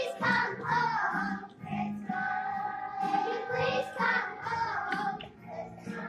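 A group of young children singing a song together, with pitch rising and falling from phrase to phrase and brief breaks between lines.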